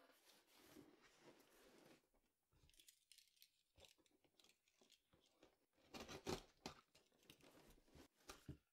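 Large corrugated cardboard shipping box being tipped up and set back down on a table: faint scraping and rubbing of cardboard, with a few louder scuffs about six seconds in.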